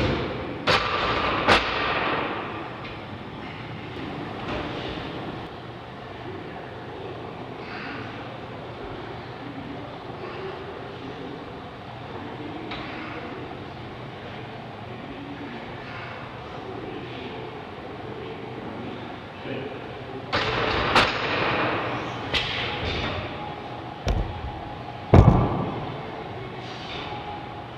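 Weight-room sounds during a heavy barbell bench press set: sharp clanks in the first two seconds, a long quieter stretch, then a cluster of clanks from about twenty seconds in and two heavy thumps near the end.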